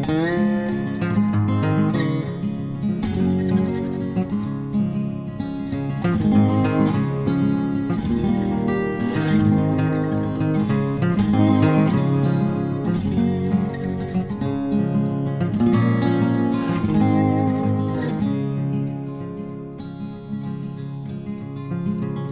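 Background music led by strummed acoustic guitar, steady throughout and a little softer near the end.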